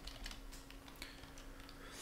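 Faint computer keyboard typing: a few separate keystrokes as text is typed in a terminal editor.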